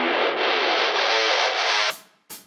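Metal song intro: distorted electric guitar with effects, playing a repeating figure through a filter that slowly opens so the sound grows brighter, then cutting off suddenly near the end.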